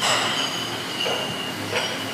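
Iron plate-loaded dumbbells knocking together as they are handed to a lifter on a bench, a sharp clank right at the start with the metal plates ringing on afterwards, and a few softer knocks.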